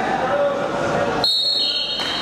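Spectators and coaches shouting, then a little over a second in a referee's whistle blows a long, steady, high blast that drops to a lower pitch partway through: the signal for the fall that ends the wrestling bout.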